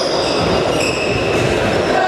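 Futsal players' indoor shoes squeaking on the sports hall floor as they run and turn: several short, high squeals, one near the start, a longer one about a second in and another near the end, over a steady hall din.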